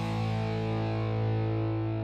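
Background music: a single guitar chord held steadily.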